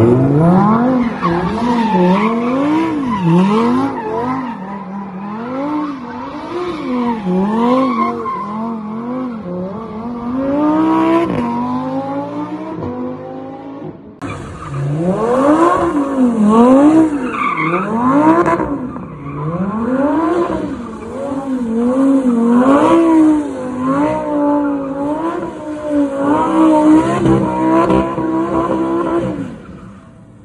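Lamborghini Huracán V10 engines revving up and down over and over, about once a second, while the cars spin donuts, with tyre squeal. There is a brief break about halfway through, then a second car revs the same way.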